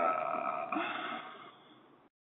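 A man's wordless, drawn-out voice sound, like a long hesitant "uhh", over a narrow phone-quality line; it fades away over the last second.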